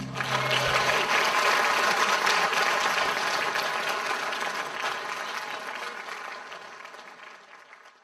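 Audience applauding after a song, with the song's last low note ringing out under the clapping for about the first second; the applause dies away gradually toward the end.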